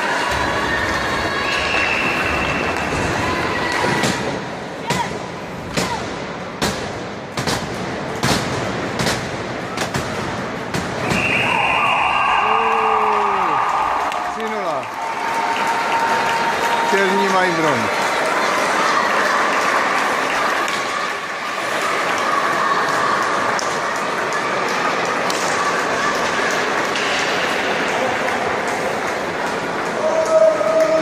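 Ice hockey game in an indoor rink: a run of sharp clacks and knocks of sticks and puck in the first half, then voices calling and shouting with several falling cries, over steady arena noise.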